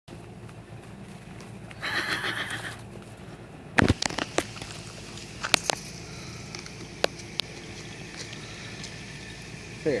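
A loud sharp bang about four seconds in, followed by a scatter of shorter sharp knocks over the next few seconds: a baboon's wire-mesh enclosure fence being struck.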